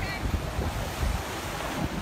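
Ocean surf washing on the beach, with wind buffeting the phone's microphone in a low, uneven rumble.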